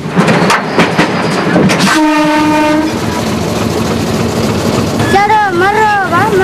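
Train of water tanker wagons on the move, wheels clattering and knocking on the rails, with the train's horn sounding one steady blast of about a second, two seconds in. A voice calls out near the end.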